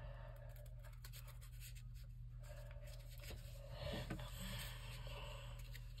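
Faint rustling and rubbing of folded paper being handled and fitted together by hand, with a few small ticks, over a steady low hum.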